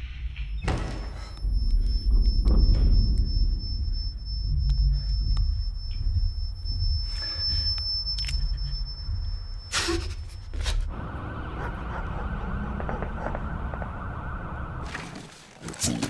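Film sound design: a deep, low drone with a thin, steady high-pitched whine above it for about the first ten seconds, broken by a few sharp knocks. After the whine stops, a hiss takes over until the drone drops away near the end.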